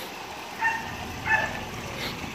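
A dog yipping twice, two short high calls less than a second apart, over the steady sound of running water.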